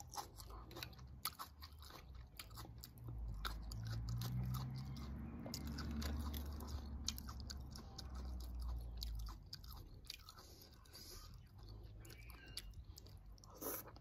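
Close-up chewing of a mouthful of green mango salad, with crunching and wet mouth clicks. A low rumble runs through the middle stretch.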